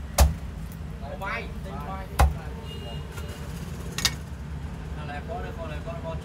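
Knife chopping through roast duck onto a thick wooden chopping block: two heavy chops about two seconds apart, then a lighter knock about four seconds in. Background voices and a low steady rumble run underneath.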